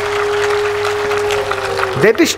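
Audience applauding under one steady held musical note, an instrument drone that stays at a single pitch.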